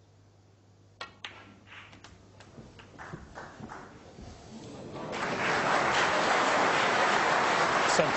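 Snooker cue striking the cue ball about a second in, with a second sharp click of ball hitting ball just after and a few lighter clicks following. Then the audience applauds, building from about three seconds in and full and steady from about five seconds in.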